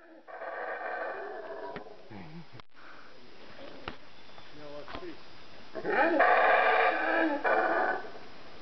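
Howler monkeys calling: a bout of howling in the first couple of seconds, a quieter stretch, then a louder bout of howling about six seconds in that runs to the end.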